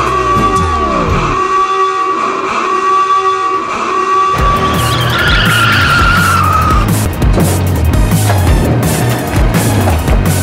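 Vehicle tyres squealing in a long skid, with a second squeal falling in pitch about five seconds in as the van brakes to a stop. Dramatic music with a heavy bass beat comes in about four seconds in.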